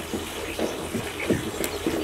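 A few faint clicks and light knocks as a baitcasting rod and reel are shifted in a clamp-on fishing rod holder, over a low steady background hum.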